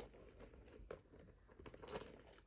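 Faint rustling of a fabric dust bag and a handbag being handled as sunglasses are pushed into the bag, with a few light clicks, the clearest about a second in and near the end.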